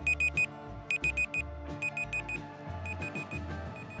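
Electronic countdown-timer beeps in the style of an alarm clock: quick bursts of four short high beeps, about once a second, growing fainter near the end, over soft background music.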